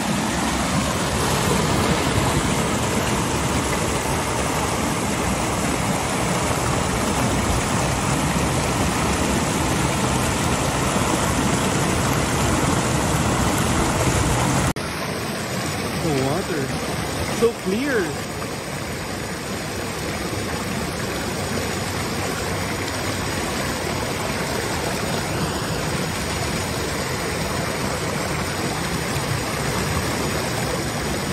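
River water rushing and splashing over rocks in a steady, continuous wash. The sound changes texture abruptly about halfway through, and a brief bump comes a couple of seconds later.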